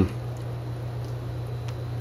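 A steady low hum with a faint even background hiss.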